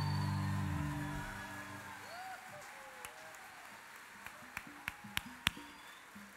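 A live rock band's last held chord fading out over the first second or two, leaving a quiet stretch. A handful of sharp clicks come in the second half, several about a third of a second apart.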